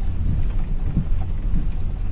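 Steady low rumble of a car rolling over a rough, unpaved dirt track, heard from inside the cabin.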